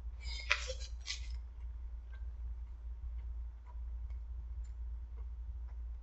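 Quiet eating sounds: a short crackly rustle lasting about a second near the start, then faint scattered clicks of chewing over a steady low hum.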